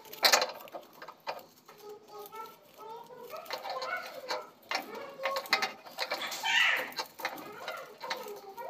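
Stiff paper and cardboard handled at close range, with a run of sharp clicks and crinkling rustles. The loudest are near the start and a longer rustle about six and a half seconds in. Faint pitched sounds bend up and down in the background.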